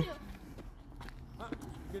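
A few faint footsteps on pavement, soft scattered clicks under low outdoor ambience.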